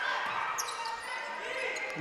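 Faint game sound in a gymnasium: a basketball dribbling on the hardwood court amid low background voices, echoing in the large hall.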